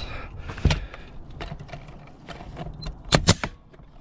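Pneumatic coil roofing nailer firing nails into the starter strip at the eave: one sharp shot about two-thirds of a second in, then two quick shots close together near the end, with light handling clicks in between.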